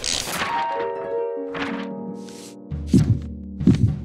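Cartoon sound effects of a photocopier spitting out sheets of paper: a few short thunks, the last two the loudest, over music with held, stepping-down notes and a low drone.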